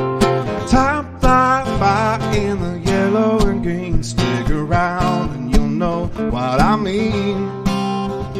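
Live acoustic guitar music: steady strummed chords, with a melody over them that slides and wavers in pitch.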